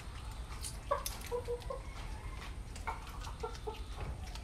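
Short clucking animal calls, a few quick notes about a second in and another group near the end, over faint clicks.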